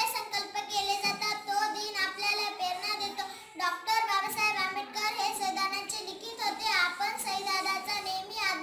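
A young girl singing solo, holding long notes with a wavering pitch, with short breaks between phrases.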